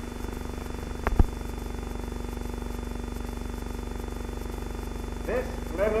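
Steady hum and hiss of an old newsreel film soundtrack, with one sharp click about a second in.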